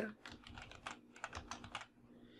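Typing on a computer keyboard: a quick run of faint keystrokes.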